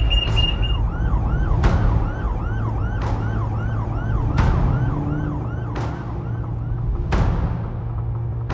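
Alarm siren whooping up and down in a fast repeating cycle, about two a second, over film-score music with a low drone and a swelling whoosh roughly every second and a half. A high pulsing beep stops about a second in.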